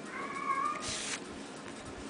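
A cat meows once, a short high-pitched call that slides slightly down in pitch. A brief high hiss of rustling noise follows right after it.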